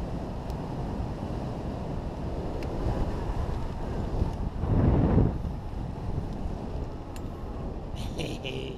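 Airflow buffeting the microphone of a boom-mounted action camera on a hang glider in gliding descent: a steady rumble, with a stronger gust about five seconds in.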